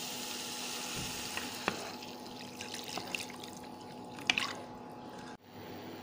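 Water being poured into a hot pan of pineapple pieces fried in ghee: a steady rush of pouring for about two seconds, then quieter with a few light clicks and splashes.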